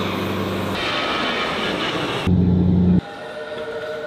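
Turboprop airliner engine noise: a loud, steady drone with a low hum, changing abruptly a couple of times and loudest just before three seconds in. At three seconds it cuts to a quieter, steadier hum.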